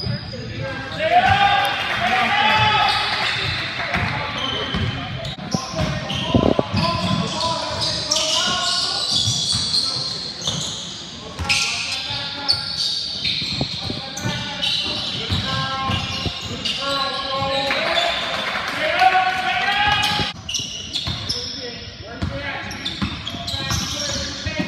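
A basketball bouncing on a hardwood court during a game, with many short knocks, and players' and onlookers' shouts and chatter echoing through a large gym.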